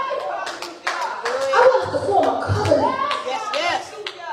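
Hand clapping, a few quick sharp claps in the first second, mixed with a woman's voice amplified through a microphone whose pitch rises and falls in long arcs.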